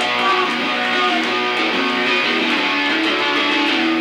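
Electric guitar strummed hard through the amp in a live punk rock band performance, the guitar loudest in the mix.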